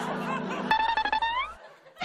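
A short comic music sting: a plucked-string note that slides upward, cutting off about a second and a half in.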